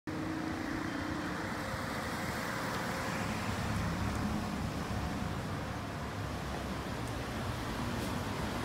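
Steady hum of road traffic, even throughout with no sudden sounds.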